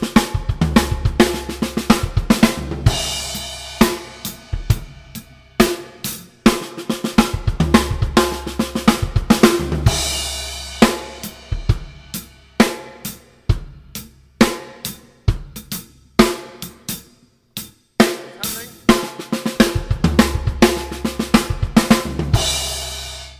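Acoustic drum kit playing a groove that runs into a fill of six-stroke rolls on the snare drum and paired bass-drum kicks, with crash cymbals ringing out several times.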